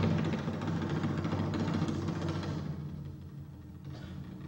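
A loud, low percussive stage sound effect that strikes suddenly and slowly dies away over about four seconds, with a deep sustained ring.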